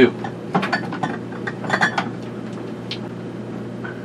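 Jars and cans clinking and knocking together as they are moved around inside a mini fridge: a handful of separate clinks over the first three seconds, one with a short ring.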